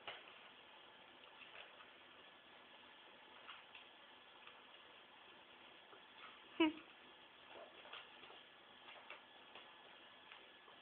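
Ferrets scuffling quietly with faint scattered clicks, and one short, loud squeak about two-thirds of the way through.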